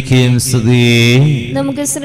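A man's voice chanting a liturgical phrase in long, steady held notes. After a short break about one and a half seconds in, a higher, steadier sung line starts.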